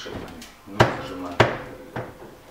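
Two sharp knocks about half a second apart, a little under a second in, as a Kessebohmer lift-mechanism mounting bracket is knocked into place against the side panel of a kitchen cabinet so its spikes seat in the wood.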